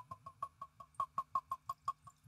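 Bourbon glugging out of the neck of a glass Wild Turkey 101 bottle into a Glencairn glass: quick, regular glugs, about six a second, each with the same hollow pitch.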